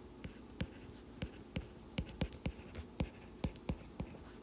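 Stylus tip tapping and stroking on a tablet's glass screen while handwriting: about a dozen light, irregular clicks.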